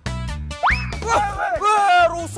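Comedic background music with a steady beat. About half a second in, a quick rising 'boing'-style sound effect plays, followed by men's exclaiming voices.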